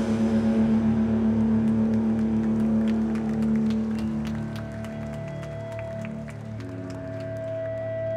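Electric guitars and bass from a live rock band let a final chord ring out through the amplifiers without drums, slowly fading. A single steady higher tone comes in about halfway and holds.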